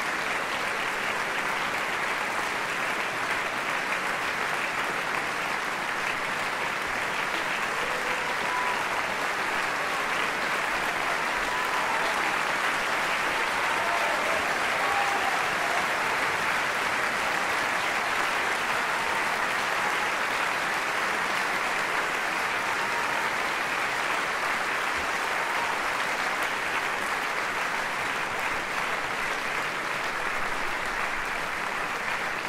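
Large concert-hall audience applauding steadily, with a few faint voices calling out over the clapping partway through.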